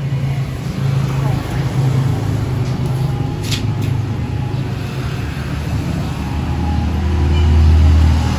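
Low engine rumble of road traffic on the street, swelling louder near the end as a vehicle passes close, with faint voices in the background.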